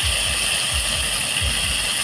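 Hot oil sizzling steadily in a clay pot as cherry tomatoes fry in it, with an irregular low rumble underneath.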